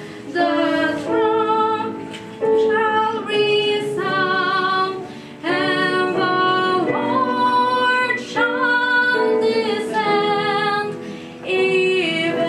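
A woman singing a sacred song in long held phrases with a wavering vibrato, pausing briefly between phrases.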